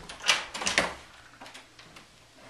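Front door's brass knob and latch clicking and rattling as the door is opened: a quick cluster of sharp clicks in the first second.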